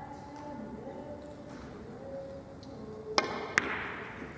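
A three-cushion carom billiards shot: two sharp clicks about a third of a second apart, about three seconds in. They are the cue striking the cue ball and then a ball-on-ball contact.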